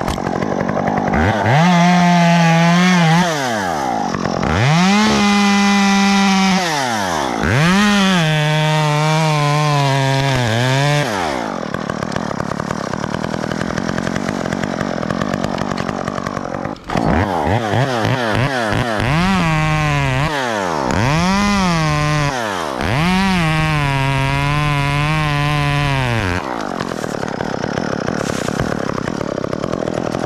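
Gas two-stroke chainsaw revving in repeated short throttle bursts, its pitch climbing and then sagging as the chain bites into oak limbs. There are two runs of cuts with a lull of lower running in between.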